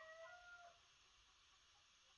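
A faint, drawn-out animal call held at a nearly steady pitch, which stops under a second in.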